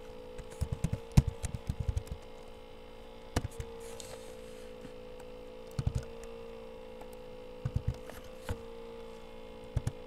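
Computer keys tapped in short bursts, a quick flurry about a second in, then scattered groups of a few taps, over a steady electrical hum.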